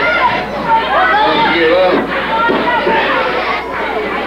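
Several voices talking and shouting over one another: spectators at ringside calling out during a wrestling hold.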